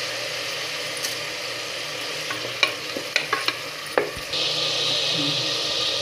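Onions and tomatoes sizzling in oil in an aluminium pressure cooker, stirred with a wooden spatula that knocks against the pot several times in the middle. The sizzle grows louder about four seconds in.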